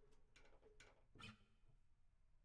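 Near silence: faint room tone, with a brief faint sound a little past one second in.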